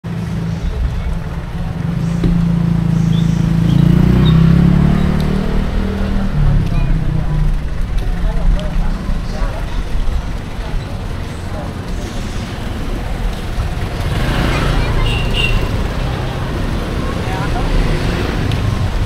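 Busy city-street ambience: motor vehicle engines running and passing, with a low engine rumble loudest a few seconds in and another vehicle passing near the end, under the talk of people nearby.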